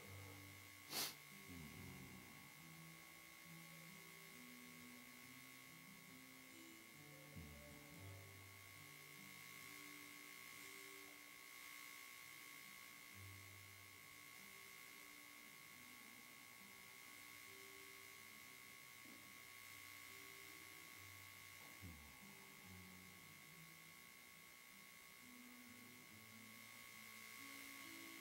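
Faint, slow keyboard music: low sustained notes that change pitch every second or so, over a steady high electrical whine. A sharp click about a second in.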